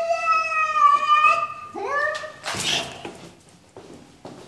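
Angry cat yowling: a long, drawn-out, wavering call of nearly two seconds, then a shorter rising call, then a brief harsh noisy burst.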